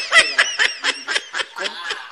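A person laughing in quick, high-pitched bursts, about five a second.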